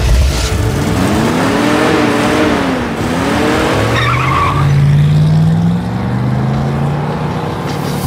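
A car engine revving as the car pulls away hard, with tyre noise. Its pitch climbs, dips once about three seconds in as at a gear change, then runs steady at speed.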